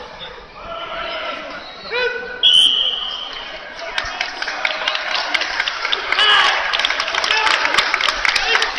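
A shout, then a single short, loud referee's whistle blast as the judges give the decision with their flags, followed by applause and clapping that builds through the sports hall along with crowd voices.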